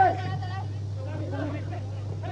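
Match sound from a football pitch: faint, distant voices and shouts over a steady low hum, with a slightly louder call right at the start.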